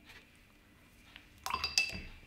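A paintbrush clinking against a hard ceramic or glass container: a short, bright ringing clink about a second and a half in, after near quiet.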